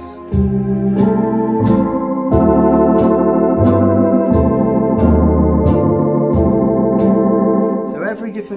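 Orla GT8000 Compact electronic organ playing sustained chords over a bass line, with a steady accompaniment beat ticking about twice a second. The music stops just before the end.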